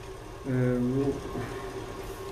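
A man's short hesitant 'uh', with a faint steady hum underneath.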